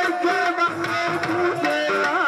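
Live Punjabi folk music (mahiye), a melody of held, gliding notes over tabla accompaniment.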